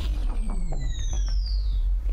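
A deep, steady low rumble with a high-pitched whine that glides downward over the first two seconds, and scattered sharp clicks: film sound design rather than the song.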